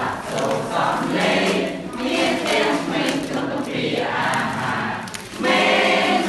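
A group of voices singing a Khmer children's song together, with a short break about five seconds in before the singing comes back in loudly.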